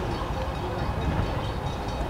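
Steam train running toward the station in the distance: a steady low rumble.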